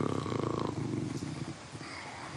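A man's drawn-out hesitation sound ("э-э") held at one pitch for under a second, trailing off into a quiet, low, creaky murmur as he searches for the next word.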